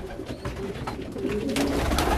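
Meat pigeons cooing, with low drawn-out coos and a few light clicks.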